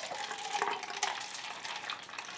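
Coffee pouring from a Stanley vacuum bottle into a foam cup: a steady splashing stream.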